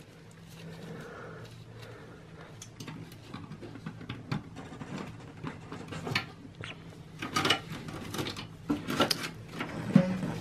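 PC power-supply cables and plastic connectors being handled with gloved hands inside an open desktop case: irregular light clicks, taps and rustling as the SATA power lead is fitted to the hard drive, busier in the second half.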